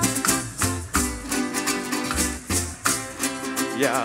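Parang band playing an instrumental passage: strummed cuatros and guitars over a low bass line, with maracas (shac-shac) shaking a steady rhythm.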